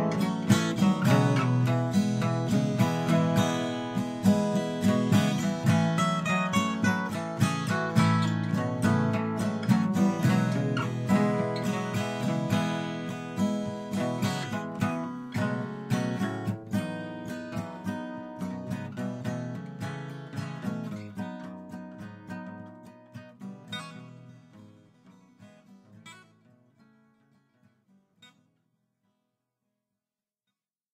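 Instrumental ending of a song played on strummed acoustic guitar, with no vocals. The music fades out steadily and dies away near the end.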